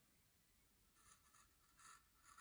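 Faint scratching of a pen writing on paper, starting about halfway through and growing a little louder near the end.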